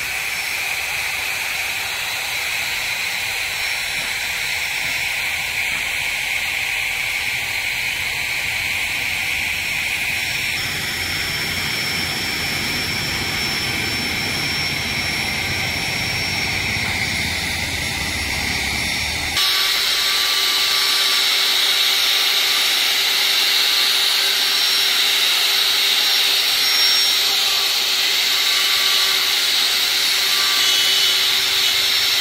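Steady noise with no clear source for the first two-thirds, changing abruptly twice. From about two-thirds of the way in, a handheld electric router runs with a steady high whine as it cuts a carved pattern into a wooden panel.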